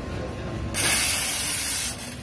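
Espresso machine steam wand purged: a burst of hissing steam that starts suddenly under a second in and cuts off just before the end, the short blast that clears water from the wand before milk is steamed.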